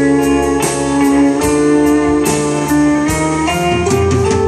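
Live country band playing an instrumental break, with a pedal steel guitar's held, sliding notes prominent over guitars, bass and a steady drum beat.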